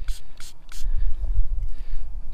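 Short scratchy scrubbing strokes, about five in the first second, as a small brush scrubs dirt off a dug lead eagle breastplate held in a gloved hand, over a steady low rumble.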